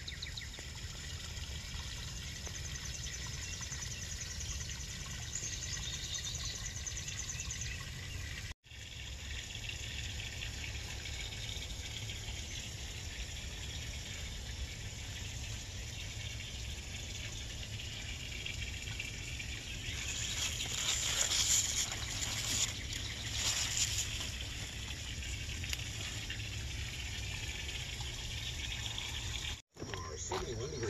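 Outdoor garden ambience: a steady hiss and low rumble with faint high chirping calls, broken by a brief dropout about a third of the way in. About twenty seconds in come a few seconds of crackly rustling as a hand moves through cucumber leaves and vines.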